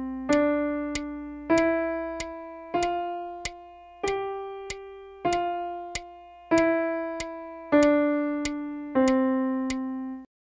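A piano plays a slow five-note scale up and back down, D E F G F E D C, in half notes. Each note is held for two beats and fades before the next. A light click marks every beat.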